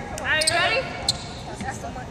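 A short, bright burst of voice with quickly rising and falling pitch in the first second, in a large gym, followed by a single sharp knock about a second in.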